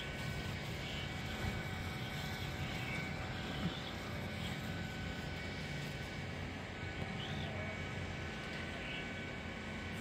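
Steady low outdoor rumble with a few faint, short chirping calls from a large flock of black birds, the calls coming singly every few seconds.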